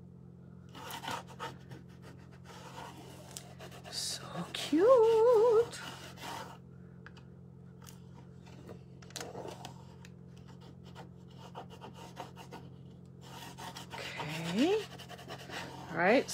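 A rub-on décor transfer being rubbed down onto furniture slats: faint, irregular scratchy rubbing strokes. A short hummed voice sound about five seconds in is the loudest thing, and another rising hum comes near the end.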